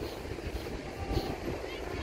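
Wind buffeting the microphone over the steady wash of ocean surf, with faint distant voices.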